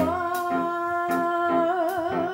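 A woman singing one long held note that breaks into vibrato near the end, over a live band with a regular percussion hit about every three quarters of a second.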